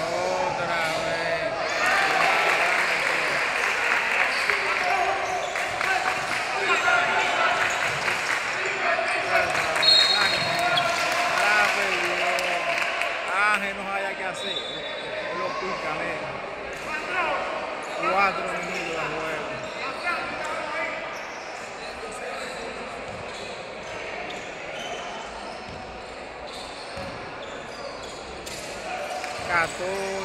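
Basketball bouncing on a wooden gym court during play, mixed with voices of players and spectators calling out, echoing in a large hall.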